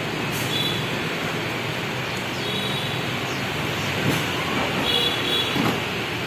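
Aftermarket power tailgate on an MG ZS closing under remote control: short high beeps repeat about every two seconds while it moves, and brief knocks sound in the second half as it shuts.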